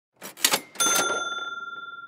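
Logo-intro sound effect: a few quick rattling clicks, then a single bright bell ding just under a second in that rings on and fades away slowly.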